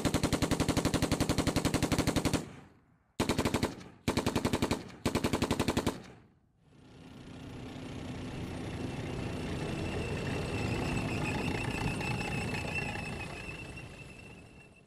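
Gaming sound effect of rapid automatic gunfire: one long burst of about two and a half seconds, then three short bursts about a second apart. This is followed by a sustained noisy swell that builds for several seconds and fades out near the end.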